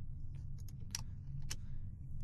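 About half a dozen sharp computer keyboard and mouse clicks, spread unevenly, the clearest about a second in and halfway through, over a low steady hum: a build being started.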